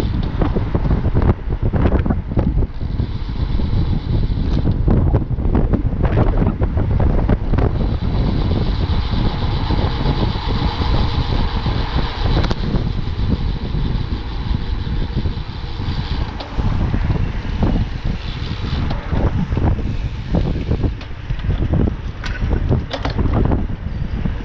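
Wind buffeting the microphone of a camera on a bicycle riding in a group at speed, mixed with tyre and road noise and short knocks, with a brighter, higher hiss for a few seconds in the middle.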